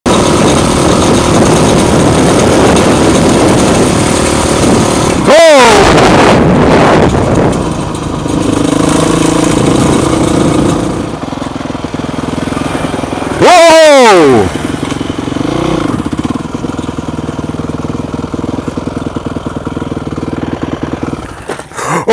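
Honda CRF four-stroke dirt bike engine running under way with wind on the helmet microphone, dropping to a quieter idle-like run about halfway. Two loud, brief cries from a rider's voice cut through, one about five seconds in and one a little past halfway.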